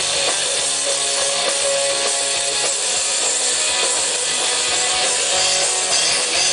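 Rock band playing live: electric guitars and drum kit in an instrumental passage without singing.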